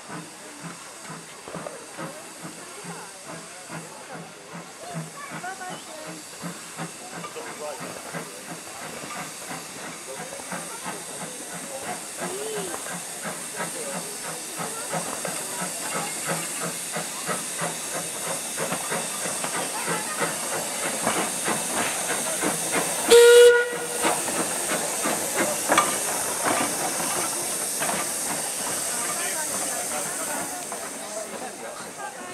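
Steam tank locomotive working a train of coal wagons, with steady steam hiss and regular exhaust beats that grow louder as it draws near. A short, loud steam whistle blast sounds about three quarters of the way through.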